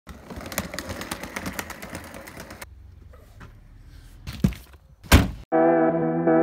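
Outdoor background noise with a run of light clicks, then after a cut two thuds, the second and louder one a car door being shut. Guitar music starts about half a second before the end.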